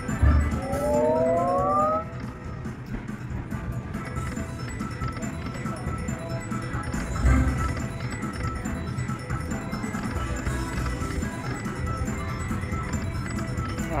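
A Buffalo Gold slot machine spinning, its electronic tones and jingles playing over a steady bed of machine chimes, with a sweep of rising tones about a second in. Loud low thumps come just after the start and again about seven seconds in.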